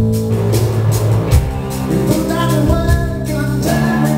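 A live rock band playing: electric guitars and a drum kit, with a man singing into the microphone from about halfway in, heard loud from among the crowd in the hall.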